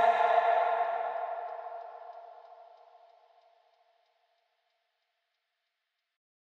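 The background pop song's last chord ringing out and fading away over about three seconds, then silence.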